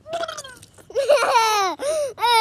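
A boy laughing loudly, a short burst at first and then long cries that fall in pitch from about a second in.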